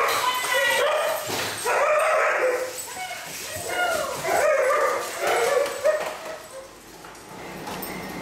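A group of dogs whining and yipping excitedly, several voices overlapping in quick arching calls, dying away about a second before the end.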